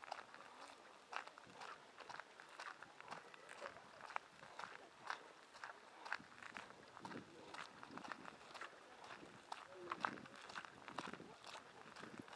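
Faint footsteps crunching on a gravel path at an even walking pace.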